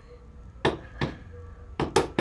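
Four sharp knocks at uneven spacing: one about two-thirds of a second in, another at one second, and a close pair near the end.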